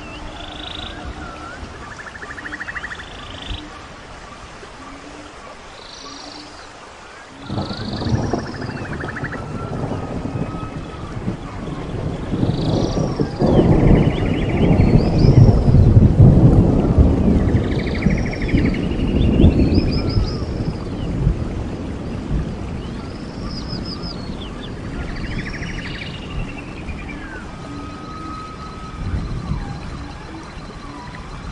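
Rainforest ambience: birds calling over and over in short, arched chirping notes, while a rumble of thunder starts suddenly about a quarter of the way in, swells to its loudest around the middle, and slowly dies away.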